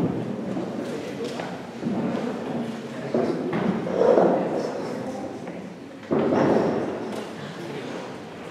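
Indistinct voices with irregular thuds, with sudden rises in loudness about two, three and six seconds in.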